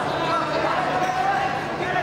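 Several indistinct voices calling out and talking, echoing in a large sports hall.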